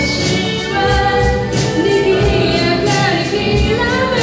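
A live rock band plays with a female lead vocal. Sung notes are held over a drum kit keeping a steady beat on kick drum and cymbals, with bass, acoustic guitar and violin in the band.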